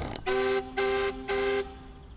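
Three short horn toots at a steady pitch, evenly spaced, each under half a second long.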